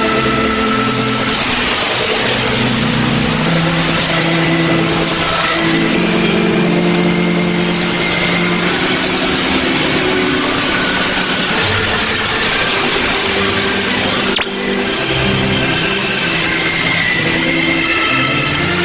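Shortwave AM signal of Voice of Hope Africa on 13680 kHz, received on a software-defined radio just before the station's 1400 UTC sign-on: a slow melody of held notes heard faintly through heavy static and hiss. The signal briefly dips about fourteen seconds in.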